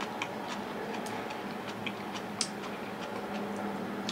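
Quiet eating sounds at a table: light, irregular clicks of chopsticks working noodles in a bowl and of chewing, the sharpest about two and a half seconds in, over a faint steady hum.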